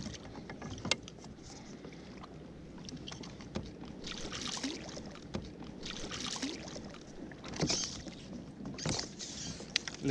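Hooked grouper thrashing at the surface beside a kayak, splashing in several short bursts through the second half, with a few sharp clicks earlier on.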